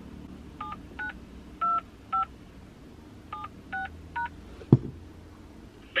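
Phone keypad touch tones (DTMF) as a PIN is keyed into an automated phone line: seven short two-note beeps, four and then three after a pause. A single low thump comes just before the end.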